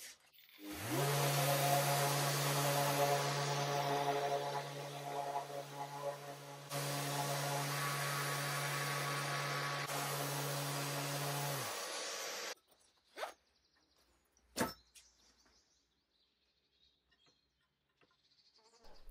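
Electric sander with 180-grit paper spinning up and then running steadily on wood, with a sudden jump in level about seven seconds in. It stops about twelve seconds in, followed by two short knocks.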